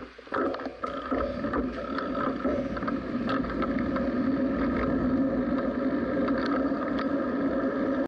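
Riding noise picked up by a bicycle-mounted camera as the bicycle pulls away from a standstill: a steady drone of rolling and wind noise sets in about half a second in and grows a little louder as speed builds, with small clicks and rattles scattered through it.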